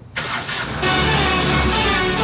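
A car engine cranking and starting as the ignition key is turned. About a second in, loud music comes in over it.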